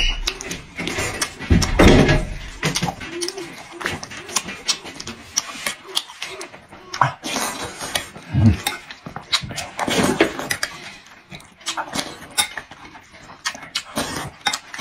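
Close-miked eating: a man chewing and slurping spoonfuls of rice in broth with frozen tofu and chilies, with many small wet mouth clicks and a few louder slurps. A metal spoon scrapes and clinks against the ceramic bowl.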